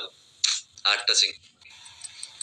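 Brief fragments of a person's voice: a short hiss-like sound about half a second in, then a short burst of speech around a second in, followed by quiet.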